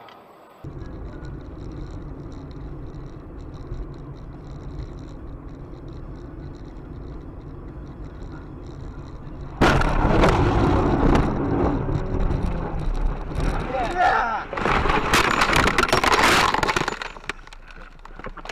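Steady engine and road drone inside a moving car, then, just under halfway through, a dashcam-recorded car crash: a sudden loud racket of impacts, crunching and breaking glass that goes on for about seven seconds. It ends with the windshield shattered.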